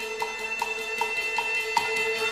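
Teochew (Chaozhou) small gong-and-drum ensemble music: a held note over light, evenly spaced percussion strokes, about two and a half a second.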